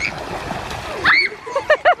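Water splashing in an above-ground pool as children break the surface after ducking under, followed about a second in by a short high-pitched child's voice and then quick laughter.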